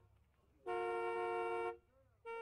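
Car horn sounding one long blast of about a second, starting a little past half a second in, two notes sounding together.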